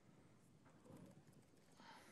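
Near silence with a few faint keyboard clicks as a username is typed on a laptop.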